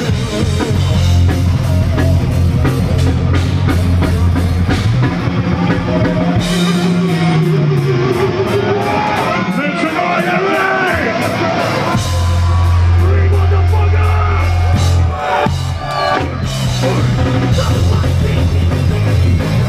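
Thrash metal band playing live: distorted electric guitars, bass and fast drumming. The heavy low end drops out for several seconds midway and then crashes back in.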